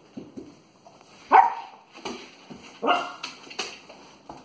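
Small dog barking in short, sharp bursts while it plays with a rope toy: a loud bark about a second and a half in, then another loud one and a softer one near the end, with small scuffling sounds between.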